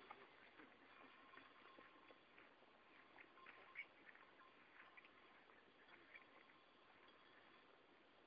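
Near silence: faint outdoor background with scattered soft ticks and a faint steady high tone.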